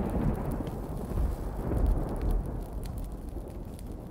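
Deep rumbling sound effect with scattered faint crackles, slowly fading, with a brief swell about two seconds in.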